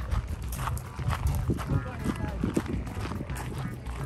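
Footsteps crunching on gravel at a walking pace, about two steps a second, over a low rumble.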